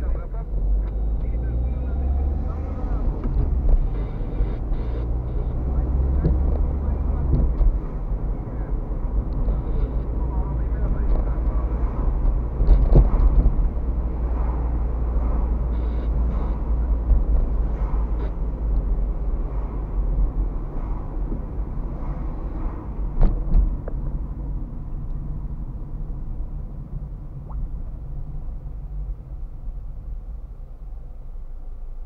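Car driving through city streets heard from inside the cabin: a steady low engine and road rumble with a few short knocks from bumps. The rumble eases near the end as the car slows behind another car at a red light.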